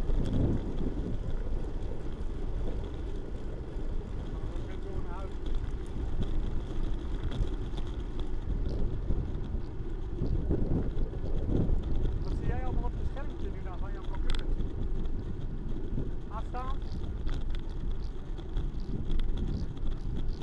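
Wind buffeting the microphone of a bicycle-mounted camera, with the rumble of road-bike tyres on asphalt running steadily underneath. A few short, high chirps come through in the middle.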